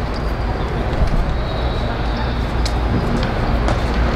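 Steady low rumble of outdoor city background noise, with faint distant voices and a few light knocks.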